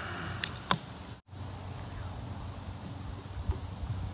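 A can of UCC canned coffee being cracked open by its pull tab: a short hiss, then two sharp clicks within the first second, the second one the loudest. After that there is quieter handling of the can.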